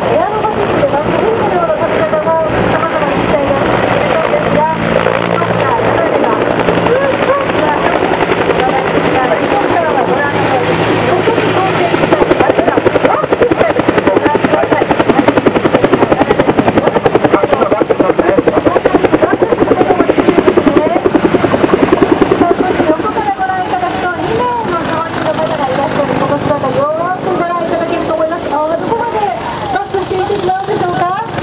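Bell AH-1S Cobra attack helicopter flying a display pass, its two-blade main rotor beating in a fast, even thud. The beat is loudest about halfway through and then eases as the helicopter moves away.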